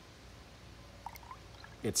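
Water starting to pour from a plastic container into a plastic cup already holding some water, beginning faintly about a second in as a light splashing trickle.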